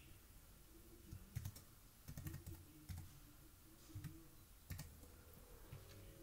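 Faint computer-keyboard typing: a few scattered, irregular keystrokes as a password is entered.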